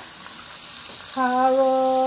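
Chicken pieces frying in oil in a pan, a steady sizzle. About a second in, a person's voice holds one long, steady, hummed tone over the sizzle.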